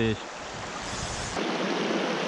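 Small mountain creek rushing over rocks in shallow riffles, a steady wash of water with a low rumble under it at first. About a second and a half in the sound changes abruptly to a brighter, slightly louder rush.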